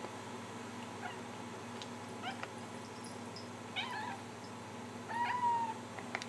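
Domestic cats meowing and chirping at birds they see outside: a few faint short chirps, then two louder meows about four and five seconds in. A steady low hum runs underneath.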